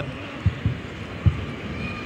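A basketball being dribbled on a hardwood court: a few low, irregular thumps over faint arena background, the sharpest about half a second in and again after about a second.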